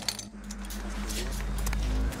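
A deep, low soundtrack drone swells steadily and cuts off abruptly at the end. Under it runs a steady low hum, and a few light metallic clinks come near the start.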